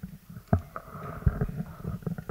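Handling noise of a table microphone on its stand being lifted and passed along a table: a sharp knock about half a second in, then several low thumps and rumbles.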